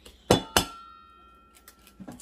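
An egg knocked twice in quick succession against the rim of a stainless steel mixing bowl to crack it, the bowl ringing briefly after each knock.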